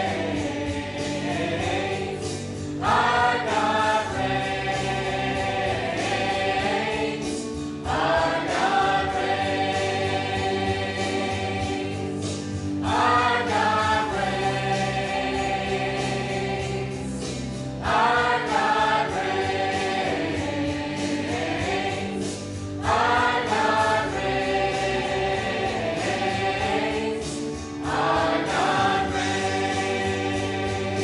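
Mixed church choir of men and women singing a gospel song, its phrases starting again about every five seconds over steady low notes.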